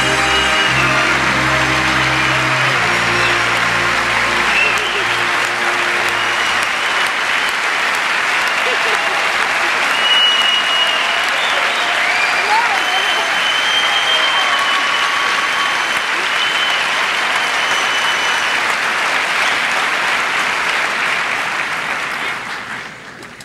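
Large theatre audience applauding steadily, with scattered cheering voices. The orchestra's music under the applause fades out in the first few seconds.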